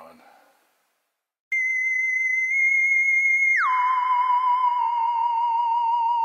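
A steady electronic tone sets in after a moment of silence, high at first, then slides down about an octave some two seconds later and holds there with a slight waver.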